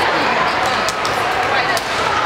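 Many voices chattering in a large, echoing gym, with two sharp smacks of a volleyball striking the hardwood floor, about a second in and near the end.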